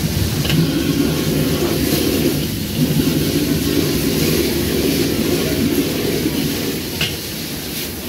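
High-pressure gas wok burner running with a loud, steady low rumble as a carbon-steel wok is tossed over the flame, with a couple of light metallic clinks from the ladle and wok. It eases a little near the end.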